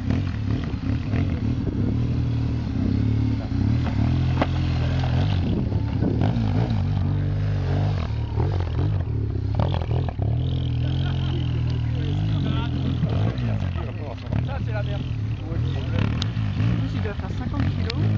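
BMW GS adventure motorcycle engine running at low revs, the note rising and falling with the throttle as it is ridden slowly off-road, with a few knocks.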